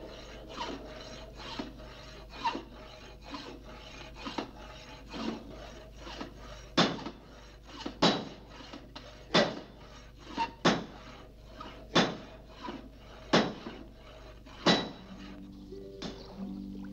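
Blacksmith's hammer blows on metal at an anvil, in a steady working rhythm. Lighter blows at first; from about seven seconds in, heavy blows come roughly every second and a quarter, with lighter taps between them.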